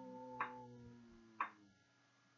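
Two sharp metronome-like ticks about a second apart, counting the beats of the breath. Under them a sustained tone with several overtones fades away over the first second and a half.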